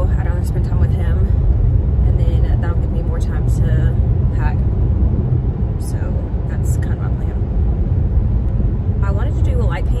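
Steady low road and engine rumble inside a moving car's cabin, under a woman talking.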